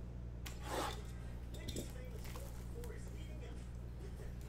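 Cellophane shrink wrap on a trading-card box rustling briefly as it is handled, about a second in, with a few fainter handling sounds after, over a low steady hum.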